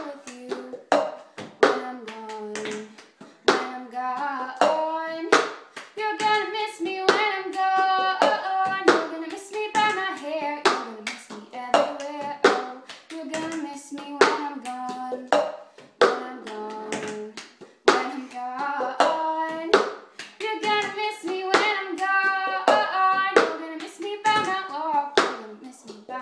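A woman singing unaccompanied while she beats out the cup-song rhythm herself: hand claps, and a cup tapped, slapped and set down on a tabletop, giving sharp clicks throughout.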